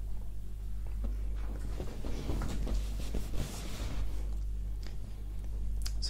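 Soft rustling with scattered small clicks, strongest in the middle, over a steady low electrical hum.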